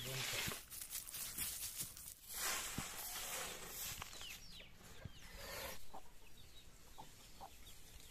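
A short-handled grass broom sweeping a dirt yard in several scratchy strokes, each lasting about half a second to a second, with chickens clucking in the background.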